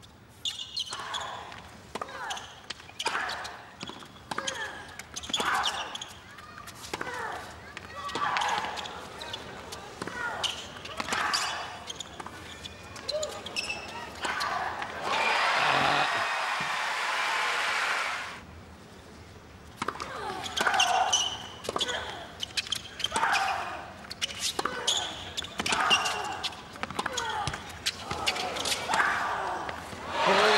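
Tennis rallies on a hard court: many sharp racket strikes and ball bounces in quick succession, broken a little over halfway by a few seconds of crowd applause before play resumes.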